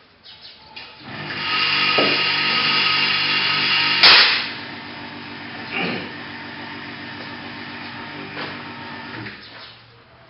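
A small motor runs steadily, loudest for its first three seconds. A single sharp click about four seconds in is the loudest sound. The motor then carries on more quietly and stops just before the end.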